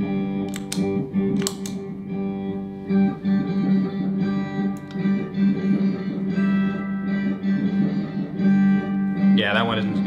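A one-string shovel run through a looper and pitch-shifting guitar pedals makes a looped drone: a low note stacked with octave layers, pulsing in a repeating, odd-metre rhythm. About nine seconds in, a higher, wavering, sweeping layer comes in on top.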